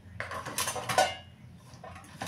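Washed kitchen utensils and plastic containers clattering as they are set into a plastic dish rack. There is a quick run of knocks in the first second, the loudest just before the end of it.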